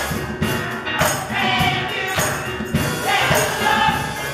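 Gospel choir singing together in full voice, with keyboard accompaniment and a steady percussion beat.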